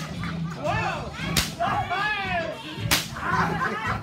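A rope lashed like a whip, cracking sharply three times about a second and a half apart, the first right at the start, with voices shouting between the cracks.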